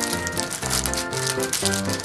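Background music with a steady beat, over a clear plastic wrapper crinkling in rapid irregular clicks as a small gold plastic star ornament is unwrapped by hand.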